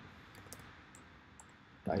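A few faint, scattered keystrokes on a computer keyboard as code is typed.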